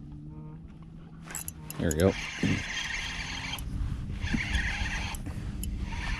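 Piscifun Honor XT spinning reel being cranked to retrieve a hooked crappie, in two spells of whirring with a short pause between them.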